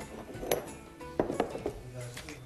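A few sharp clinks of a metal saucepan against glass dessert cups as thick milk pudding is poured into them, over soft background music.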